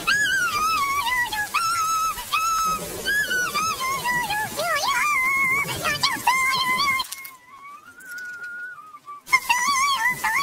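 A very high-pitched, pitch-shifted voice in a string of short, wavering wailing calls. It thins to one faint held tone for about two seconds near the end, then comes back loud.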